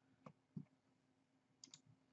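Near silence with a few faint computer-mouse clicks, two of them in quick succession near the end.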